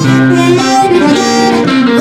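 Amplified blues harmonica played into a cupped bullet microphone, with a phrase of held notes over an electric guitar accompaniment.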